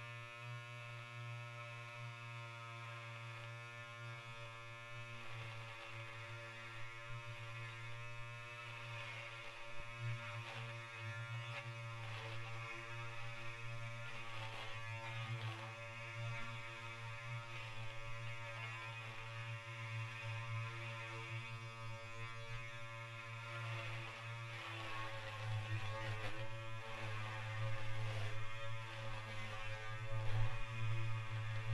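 Electronic drone music built on the buzz of an electric beard trimmer shaving stubble: a steady low hum under layered sustained tones, with scratchy rasps, slowly growing louder toward the end.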